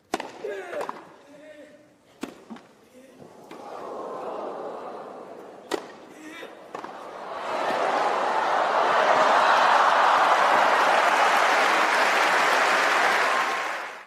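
Tennis ball struck by rackets on grass: a serve and rally shots as a few sharp hits. A short voice near the start. A rising crowd murmur, then loud crowd cheering and applause from about seven seconds in, cut off abruptly at the end.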